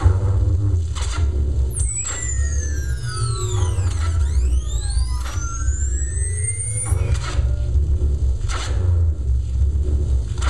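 Live electronic music played loud: a continuous heavy bass under sharp noise hits. From about two seconds in to about seven seconds in, a dense sweep of many tones glides down and then back up.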